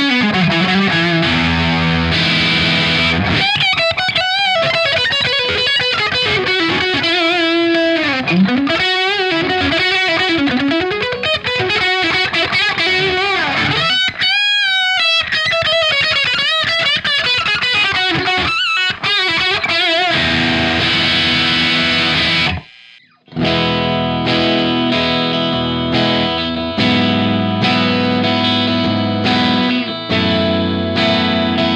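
Overdriven electric guitar, a Gibson Les Paul through a Vox AC15C1 valve amp turned up full with a Sick As overdrive pedal, playing a distorted lead with wide string bends and heavy vibrato. About three-quarters of the way in it cuts out for a moment. Then a Gibson SG through the same amp at half settings plays ringing strummed chords.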